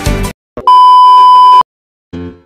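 The end of an upbeat music intro cuts off, followed by a single loud electronic beep: one steady, high tone held for about a second.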